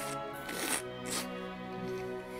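Wet crunching of a bite into juicy watermelon, twice in quick succession in the first half, over background music with held notes.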